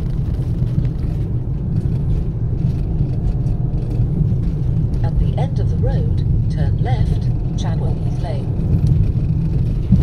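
Steady low rumble of a car's engine and tyres heard from inside the cabin while driving at low speed. A voice comes in faintly over it about halfway through.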